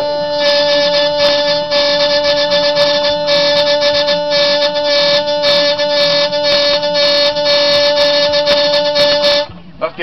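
Hurdy-gurdy drone strings sounding a steady chord while the trompette string on its loose 'dog' bridge buzzes in short repeated bursts, made by accelerating the wheel in pulses to set the rhythm. The instrument stops shortly before the end.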